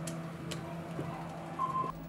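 Two light clicks of small tools against a smartphone being worked on, over a low steady hum, then a short electronic beep near the end.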